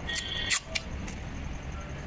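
Clear packing tape pulled from the roll and torn off, with a short sharp rip about half a second in and a few lighter crackles around it, over a steady low rumble of traffic.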